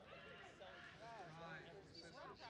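Faint, distant voices of rugby players and people at the field calling out during a scrum, with a quick high rising-and-falling call near the end.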